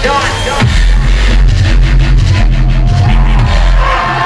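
Loud, bass-heavy live music through a concert PA. About half a second in, a deep pulsing bass line and a fast, hard drum pattern take over.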